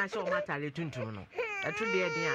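A woman talking animatedly, breaking about one and a half seconds in into a long, high, wavering cry-like wail.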